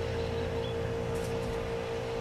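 Background music: a steady held tone over a low hum, unchanging throughout.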